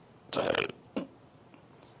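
A man makes one short, rough throat sound, a belch or cough, about a third of a second in, followed by a faint click.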